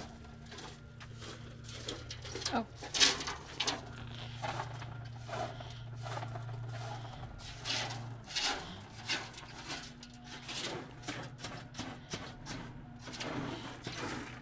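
Broom scraping and sweeping leftover gravel across an aluminium trailer bed in irregular strokes, over a low steady hum that stops about eight seconds in.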